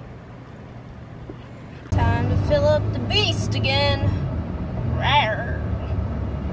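Quiet room tone, then about two seconds in a cut to a car's cabin while driving at about 50 mph: a steady low engine and road rumble. A person's voice sounds over it from about two to four seconds in and again briefly about five seconds in.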